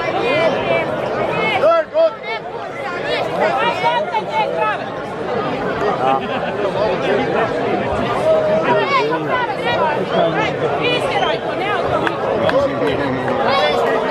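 A crowd of spectators talking at once, many voices overlapping in continuous chatter.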